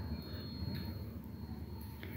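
Faint, steady low rumble with a soft grainy texture: thick kara chutney paste cooking in a kadai as a steel spoon stirs it.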